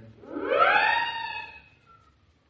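A single musical tone slides upward in pitch, levels off and fades away within about a second and a half: a gliding music cue in a radio drama.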